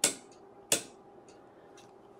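Two sharp clicks about three-quarters of a second apart, followed by a few faint ticks: the detent clicks of a Tektronix 475 oscilloscope's TIME/DIV rotary switch being turned a step at a time.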